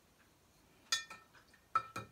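Two short clinks, each with a brief ring, a little under a second apart, from painting tools and containers knocking together as they are handled.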